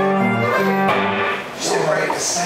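Live blues harmonica (blues harp) cupped to a handheld microphone, holding long notes over guitar, with a brief drop in the playing about a second and a half in.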